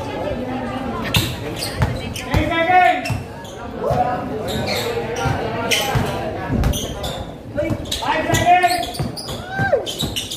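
Basketball dribbled on a hard court, irregular bounces echoing in a large hall, with players and spectators shouting over it.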